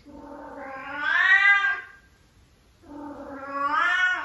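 Female cat in heat giving two long meowing calls, each rising and then falling in pitch, with a short pause before the second one starts. She has just been spayed but still has hormones in her body, so the heat goes on.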